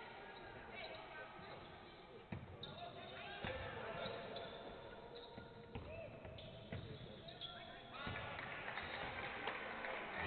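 A basketball bouncing on a wooden court floor during live play, a string of short sharp knocks, with voices in the background.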